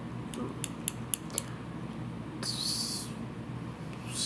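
Small fly-tying scissors snipping and clicking about five times in quick succession, trimming the butt end of the wire close to the bead. A brief high hiss follows about two and a half seconds in.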